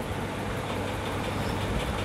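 Steady background noise, an even rushing hiss with no distinct events.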